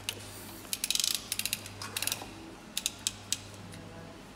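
Plastic toy dump truck being worked by hand, its mechanism giving short runs of rapid ratcheting clicks, several times.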